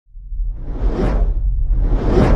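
Whoosh sound effect of an intro logo animation: a rush of noise swells to a peak about a second in and fades, over a steady deep rumble, and a second whoosh builds near the end.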